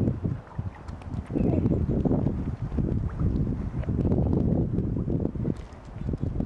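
Wind buffeting the microphone in gusts, a low rough rumble that grows loud about a second and a half in.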